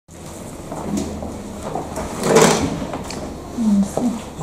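Pages of a large paper register being handled on an office desk, with a rustling burst loudest about halfway through. A brief murmur of a voice comes near the end.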